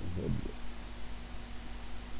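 Steady low electrical hum on the recording, with one brief low murmur from a man's voice about a quarter of a second in.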